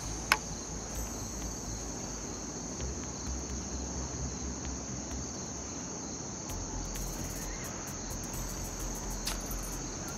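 Insects droning steadily at one high pitch over a low rumble. A sharp click sounds just after the start, and a fainter one near the end.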